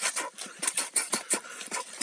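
Rapid bare-fist punches striking a splintered birch stump: a quick run of knocks, several a second, mixed with short sharp breaths.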